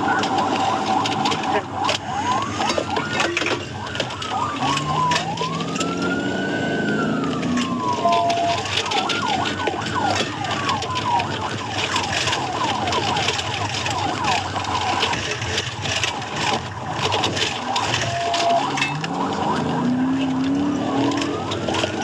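Police cruiser siren wailing, rising and falling in long sweeps of about two seconds, with stretches of faster warbling. Under it the cruiser's engine climbs in pitch as it accelerates in pursuit, heard from inside the car.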